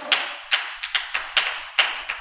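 Scattered hand clapping from a church congregation: several sharp claps, unevenly spaced.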